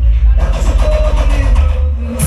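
Recorded music played loud through a Jamaican sound system, with a heavy bass line. The treble briefly drops away at the start and again near the end.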